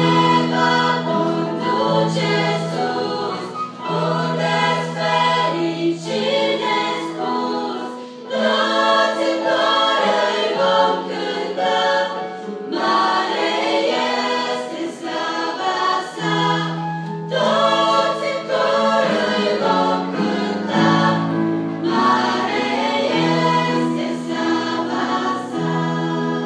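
A choir of girls and young women singing a church song together, over long held low keyboard chords that change every second or two.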